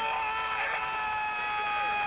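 A long, nearly level shouted note through a megaphone, held without a break, with a few other voices calling faintly around it.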